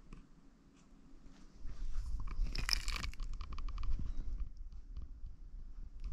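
Handling noise from a camera moved about by hand: low rubbing with scraping and a quick run of sharp crackles. It starts about a second and a half in, is loudest around the middle and eases near the end.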